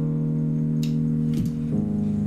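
Instrumental intro of a pre-recorded hip-hop backing track played through speakers: long held chords, changing to a new chord near the end, with two short hissy hits in the middle.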